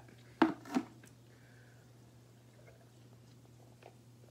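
Two short, loud mouth sounds in quick succession, sips or gulps of a fizzy drink from a glass, under a second in, then quiet with a faint steady electrical hum.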